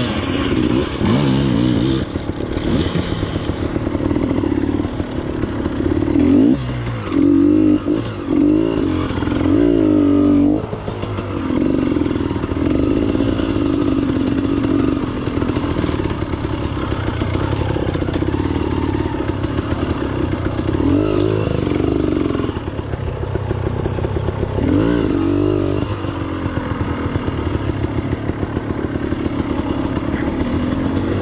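KTM enduro dirt bike engine being ridden off-road, its revs rising and falling continually with the throttle. Sharper bursts of throttle come about six to eleven seconds in and again a little past the twenty-second mark.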